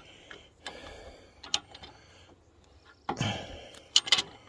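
Light clicks and small metal taps of a filter wrench being worked onto a freshly hand-threaded filter, with a short scraping rustle about three seconds in.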